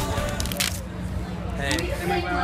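People talking in the background over a steady low hum, with a brief burst of noise about half a second in.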